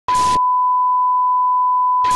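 Line-up test tone played with colour bars: one steady, unbroken beep, opening with a brief burst of hiss.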